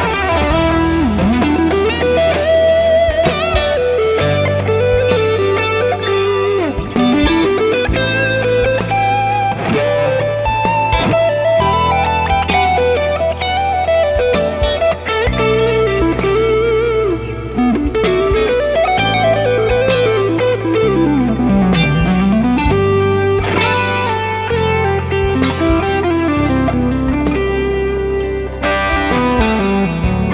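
Stratocaster-style electric guitar playing continuously, mixing chords with melodic lines full of string bends and vibrato. Low notes are held beneath and change every two seconds or so.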